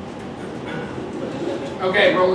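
Indistinct voices of performers on stage with no clear words, growing louder near the end as a pitched vocal sound begins.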